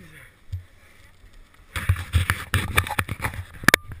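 A dense run of scraping and knocking noises close to the microphone, starting a little under two seconds in and ending with one sharp knock near the end, as ski gear is handled near the camera.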